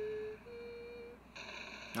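A person humming two short held notes, the second a little higher than the first, followed by a faint steady hiss from about a second and a half in.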